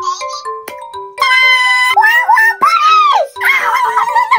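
Playful background music with a repeating low note pattern, under high-pitched wordless vocal exclamations that swoop up and down, with one long held note about a second in.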